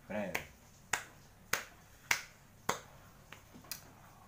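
A short vocal sound, then a person making sharp clicks in an even beat, a little under two a second, growing fainter near the end.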